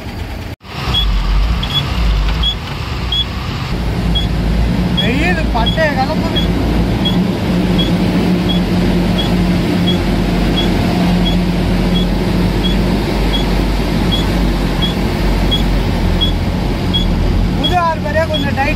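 Container lorry's diesel engine running steadily from inside the cab as the truck moves off, with a short high beep repeating about every two-thirds of a second.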